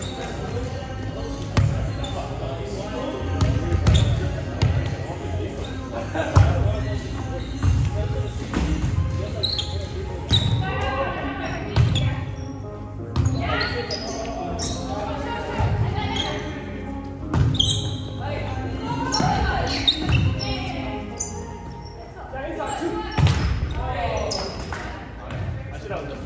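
Volleyball play in a large gym: repeated sharp smacks of the ball being hit and landing on the wooden floor, with players' voices calling out, all echoing in the hall.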